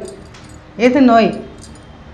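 Speech only: a woman says one short word about a second in, with quiet pauses either side.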